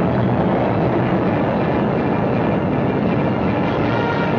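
A loud, steady rumbling roar with no clear pitch: an old newsreel soundtrack's sound for an atomic test blast.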